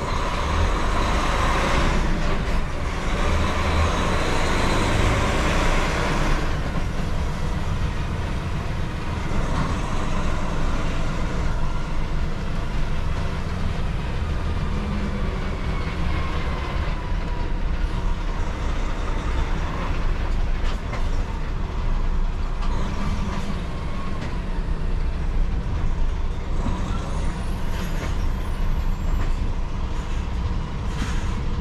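Heavy lorry's diesel engine running at low speed, heard from inside the cab as a steady low rumble while the truck creeps forward. A louder rushing noise sits over it for the first six seconds or so.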